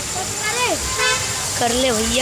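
People's voices calling out, without clear words, with a short horn-like toot about halfway through.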